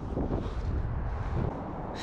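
Wind buffeting the microphone: an uneven low rumble with no clear pitch.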